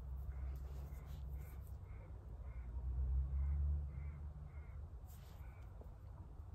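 A bird calling faintly in a run of short, evenly spaced calls, about two a second, over a low rumble that swells about halfway through.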